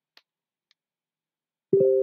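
Computer notification chime: a steady two-note tone that starts suddenly near the end and rings on, fading slowly. Two faint clicks come before it.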